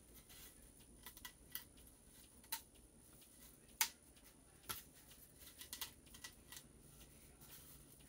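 Plastic deco mesh being handled and unrolled from its cardboard core tube: faint rustling with scattered small clicks, the sharpest about four seconds in and a quick run of them around six seconds.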